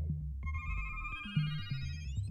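Electro house music: a stepping synth bass line, joined about half a second in by a high synth melody of short stepped notes, with quick upward pitch slides near the end.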